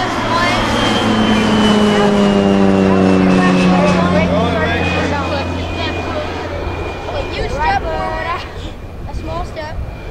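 A passing engine drone, swelling over the first few seconds and then fading, its pitch sinking slowly as it goes. Boys' voices come in briefly near the end.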